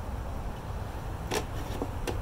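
A steady low rumble of outdoor background noise, with a single brief click a little past halfway.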